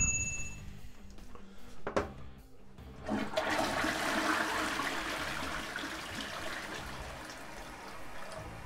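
Newly installed toilet flushed for the first time. A click comes about two seconds in, then about a second later water rushes into the bowl and gradually eases off as the cistern empties.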